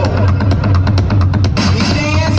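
Loud dance music from a DJ set played through a big outdoor sound system, heard from the crowd: a steady deep bass under a quick run of sharp drum hits.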